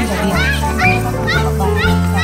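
A woman singing into a microphone over a loud backing track with a steady bass line.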